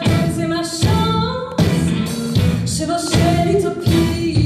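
Live band music with a woman singing a melody over electric bass, keyboards and drums keeping a steady beat.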